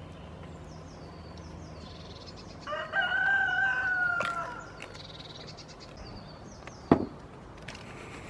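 A single drawn-out animal call of nearly two seconds, rising at the start and falling slightly at the end, over light background birdsong. A sharp knock comes near the end.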